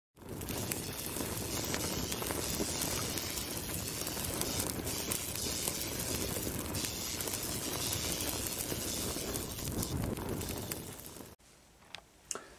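Fire burning and crackling as an intro sound effect: a dense rushing noise with scattered sharp crackles, which cuts off abruptly near the end.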